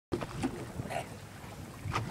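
Wind and water noise aboard a small open motorboat on choppy water, with a short sharp knock near the end.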